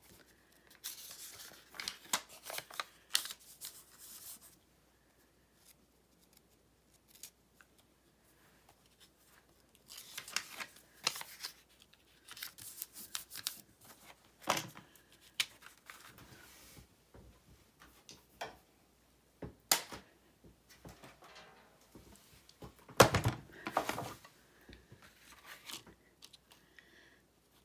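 Paper sticky notes being peeled off a pad and pressed down over a thin metal cutting die on cardstock: short bursts of paper tearing and rustling with light taps, separated by quiet pauses. Near the end comes a louder clatter of handling, one sharp tick before it.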